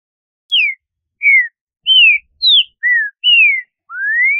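Green-winged saltator (trinca-ferro) song from a noise-cleaned recording: seven clear whistled notes in quick succession with silent gaps between them. Six of the notes fall in pitch, and the last one, near the end, rises.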